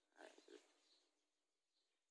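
Near silence, with a brief faint sound a quarter of a second in.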